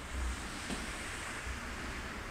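Faint steady rustling hiss with a few soft low thumps: a body and legs moving on an exercise mat against a resistance band.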